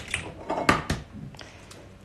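Eggs being cracked against the rim of a stainless steel mixing bowl, with a few sharp taps, the loudest just before a second in.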